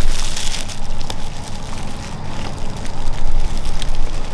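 Plastic wrap and a paper bag crinkling as a flaky layered pastry is handled, with scattered sharp crackles. A steady low rumble runs underneath.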